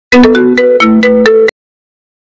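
An iPhone-style ringtone melody: a quick run of bright chiming notes lasting about a second and a half, which cuts off suddenly.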